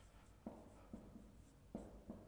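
Marker pen writing on a white board, faint: the tip taps onto the board sharply about half a second in and again near the end, with lighter taps and strokes between.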